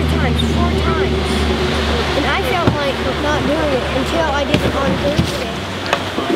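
A child talking, with the steady rush of river water and a low hum behind, the hum fading about five seconds in.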